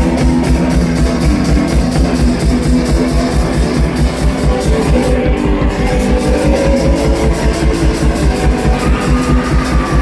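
Live one-man-band rock'n'roll: electric guitar played hard over a steady, driving drum beat with cymbal.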